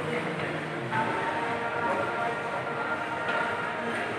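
Background music with long held notes, sounding in a large indoor hall, over a steady wash of hall noise.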